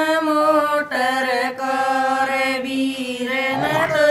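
Women singing a Haryanvi jakdi folk song without accompaniment, drawing out long held notes, with a short break near the end.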